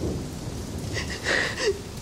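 Steady heavy rain with a low rumble underneath. A little over a second in comes a short breathy sob from one of the women.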